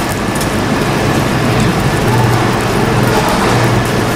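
Pork belly sizzling on a charcoal table grill, a steady hiss, with a constant low hum underneath.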